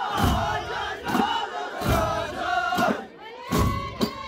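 Amazigh ahwash: a chorus of men's voices chanting and calling together over large hand-struck frame drums beating in unison, a little more than one stroke a second.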